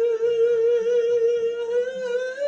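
A man singing wordlessly, holding one long high note with a slight waver, without a break.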